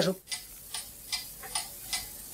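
A clock ticking steadily, about two and a half ticks a second.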